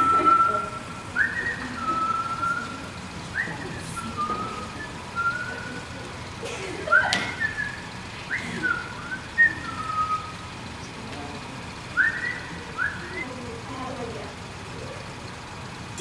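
A person whistling a tune: clear single notes with several quick upward slides between them, and a couple of faint sharp knocks partway through.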